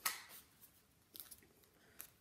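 Paper pages of a picture book rustling as a page is turned and settled, a short rustle at the start that fades quickly, then a few soft handling rustles about a second in.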